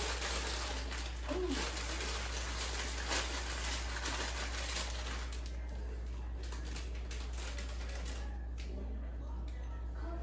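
Kitchen handling sounds: a plastic bread bag rustling and an oven door being opened as frozen Texas toast goes into the oven, over a steady low hum.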